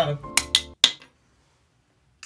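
A glass Amarula liqueur bottle knocking against the camera lens: three sharp clinks in quick succession within the first second.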